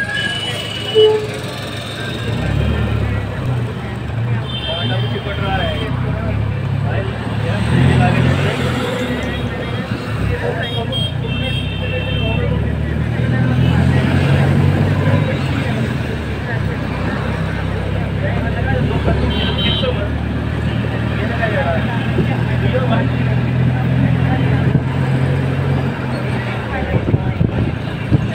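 Steady road and engine rumble of a moving vehicle heard through an open window, with traffic horns tooting briefly about four times.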